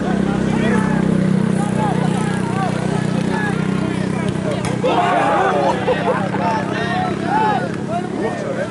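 Shouting from several voices at once during a football match on the pitch, with a burst of overlapping shouts about five seconds in as play reaches the goalmouth. A steady low hum runs underneath and fades out about halfway through.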